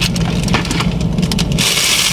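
Tissue paper and a paper gift bag rustling and crinkling as they are handled, in irregular crackles, over a steady low hum.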